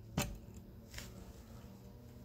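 Faint steady low hum with one short sharp click just after the start and a fainter tick about a second in, as the grinding wheel is lowered by hand onto the chain tooth; the grinder is not running.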